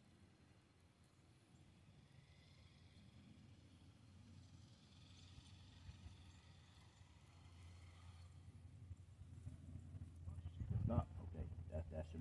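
Mini RC truck's motor whining faintly as it drives across a dirt track, louder in the middle. A person's voice comes in near the end.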